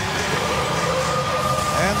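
Arena goal horn sounding one long steady blast over a cheering crowd, signalling a home-team goal.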